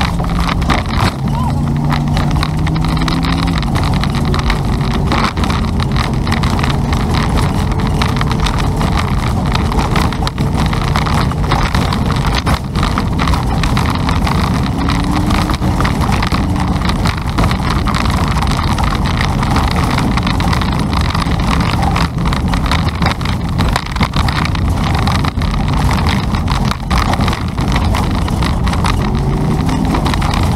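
Car interior and road noise while driving: a steady rush of engine, tyre and wind noise, with the engine's pitch rising as the car accelerates in the first seconds, again about halfway, and once more near the end.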